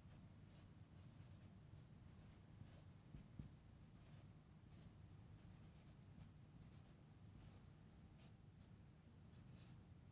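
Faint marker pen strokes on a whiteboard, coming in quick irregular runs of short strokes, over a low steady room hum.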